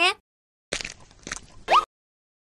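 Cartoon sound effects: a burst of crunching, crackly noise, then a short, loud rising glide that cuts off suddenly.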